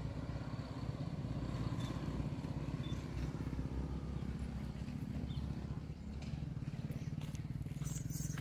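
A small engine running steadily, a low even rumble, with a few faint clicks in the second half.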